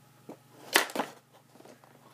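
Two sharp clicks about a quarter second apart, with a fainter tap just before them, as the packaging of a toy helicopter is handled.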